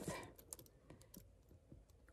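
Near silence, with a few faint clicks from metal purse chain straps being handled.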